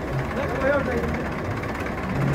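Crowd of men talking over IMT 577 DV tractors' diesel engines idling with a steady low hum.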